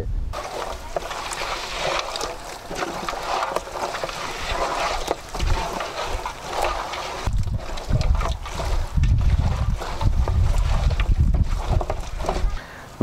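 A hand mixing raw goat meat with spice paste in a large aluminium pot: wet, squelching mixing noise. Wind rumbles on the microphone throughout and is heaviest in the second half.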